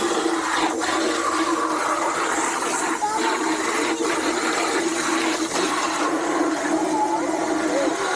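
Water from a garden hose spray nozzle jetting into a plastic bokashi bucket to rinse it out: a steady, loud rush of spraying and splashing water.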